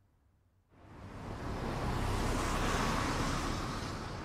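City street traffic noise that fades in from near silence under a second in and swells to a steady rush.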